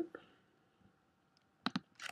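Computer mouse button clicked twice in quick succession near the end; otherwise near silence.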